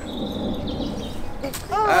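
Garden rakes scratching and rustling through dry straw mulch, with a thin, steady high tone over the first second.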